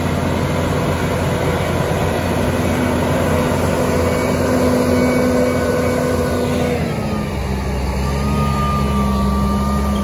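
John Deere row-crop tractor's diesel engine running steadily as it pulls a planter across the field close by. Its note drops in pitch about seven seconds in as it goes past, and a thin higher whine comes in after that.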